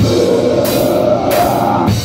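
Live heavy rock band playing loud: a full drum kit with cymbal crashes under a dense, sustained instrumental wall.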